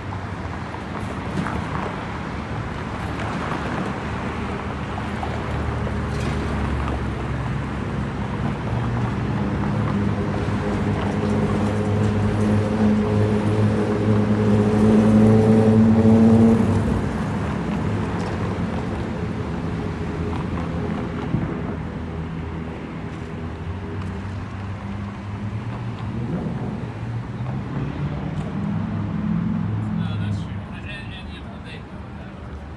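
Downtown street traffic with a nearby motor vehicle's engine running, growing louder over several seconds, loudest about halfway through, then dropping away.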